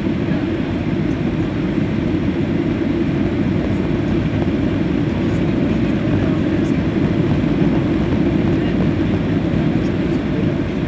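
Steady low-pitched engine and airflow noise inside the cabin of a Boeing 737 on final approach, flaps extended.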